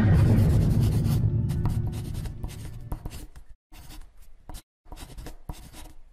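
Marker pen writing: a run of short scratching strokes broken by brief pauses. The tail of a music sting fades out during the first two seconds.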